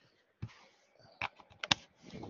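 A few computer keyboard keystrokes: about five sharp, unevenly spaced clicks, the loudest past the middle.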